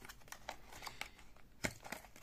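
Clear plastic packaging being handled and opened by hand: faint crinkling and light ticks, with one sharper click about one and a half seconds in.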